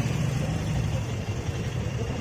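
A car engine running at idle, a steady low rumble.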